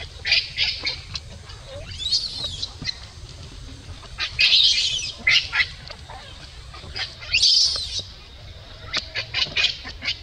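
Baby macaque screaming while its mother pins it on its back: three long high-pitched screams about two, four and a half and seven and a half seconds in, with bursts of short sharp squeaks between them.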